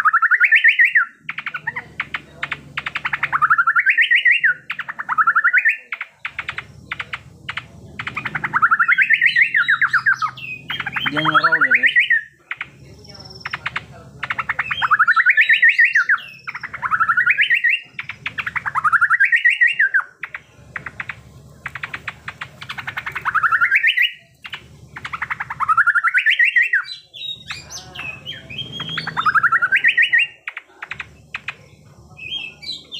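Caged cucak pantai (kalkoti) in full song. It repeats a loud burst of very rapid notes about a dozen times, each burst about a second long and sweeping up and down in pitch, rattling like a machine gun.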